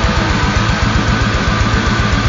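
Heavy metal track in the band's blackened death/doom style: rapid, even double-kick bass drumming under heavily distorted guitars.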